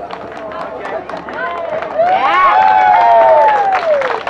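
Audience clapping after a stage show. From about two seconds in, several voices join in long calls that rise and fall in pitch.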